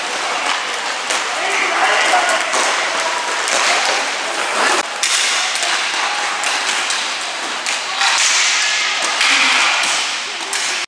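Inline hockey play: a steady rush of skate wheels on the rink floor with frequent sharp clacks of sticks on the puck and on each other, and players' voices calling out now and then. One clack about five seconds in stands out from the rest.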